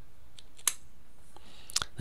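A few isolated computer keyboard keystrokes: a sharp click about two-thirds of a second in and a quick pair near the end, over faint room hiss.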